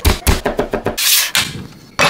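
Knife chopping garlic cloves on a wooden cutting board: a rapid run of sharp chops, about ten a second, which stops about a second and a half in.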